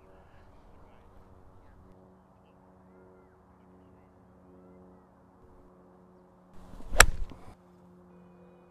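A golf iron swung and struck through the ball off turf: a short swish of the club about six and a half seconds in, then one sharp, crisp impact as it strikes the ball, a well-struck shot.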